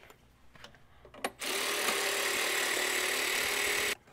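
Handheld power tool running steadily for about two and a half seconds, starting about a second and a half in and cutting off sharply near the end, undoing a fastener on the truck engine's EGR pipe.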